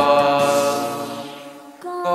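A long held sung note over karaoke backing music, picked up by a C25 livestream microphone, fading away. Just before the end the backing music comes back in.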